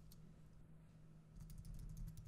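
Faint computer keyboard keystrokes: a quick run of taps starting a little past halfway, the backspace key pressed repeatedly to delete a line of text.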